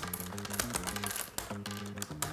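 Background music with a repeating low bass line, under quick, light plastic clicks of keycaps being pulled off and pressed onto a Logitech mechanical keyboard in a hurried keycap swap.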